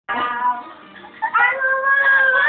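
Karaoke singing: women's voices through microphones. After a quieter stretch, a loud high note is held from about halfway in.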